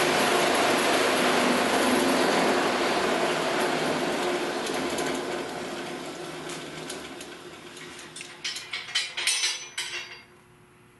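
DC electric motor spinning a chipper shredder's rotor at about 1,550 RPM, a steady whirring with a hum, airplane-like, that dies away gradually over several seconds. Near the end comes a quick series of sharp clicks and rattles.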